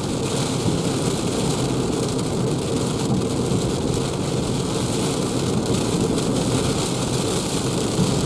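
Steady noise inside the cabin of a Renault Zoe electric car driving at about 84 km/h through a gusty rain squall: tyres hissing on the wet road, wind, and rain on the windscreen and body.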